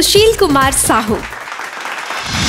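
Audience of children applauding, the clapping taking over about a second in as a woman's voice ends.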